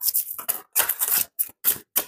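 A tarot deck being shuffled by hand: a quick run of short card strokes, about four a second, with brief gaps between.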